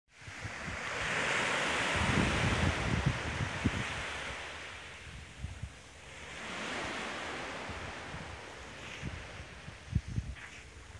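Small sea waves washing up on a beach, swelling twice, with wind buffeting the microphone.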